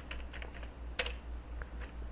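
Computer keyboard being typed on: a few separate, faint keystrokes, with one sharper click about halfway through.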